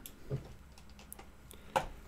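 A few faint, scattered clicks at a computer, the loudest one near the end.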